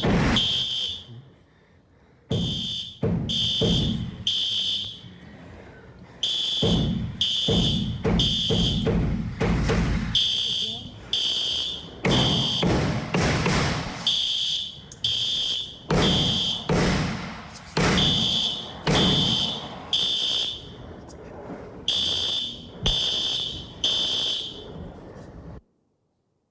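Fire alarm sounding in loud high-pitched pulses, about three or four in a row roughly 0.7 s apart, then a short break, over heavy thuds and noise, heard as recorded footage played back in a courtroom. The sound cuts off suddenly near the end.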